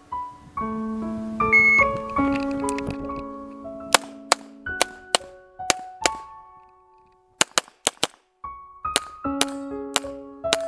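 Background music with held, ringing melodic notes. From about four seconds in, a pistol fires about a dozen sharp shots in quick runs; the music drops away briefly just before the fast string of four shots near the middle.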